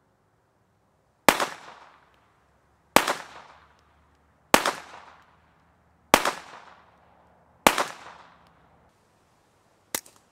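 Five unsuppressed shots from a .22 LR Ruger Mark IV pistol, fired at an even pace about a second and a half apart, each crack followed by an echo that fades over about a second. This is the host gun's baseline report with its integral suppressor removed.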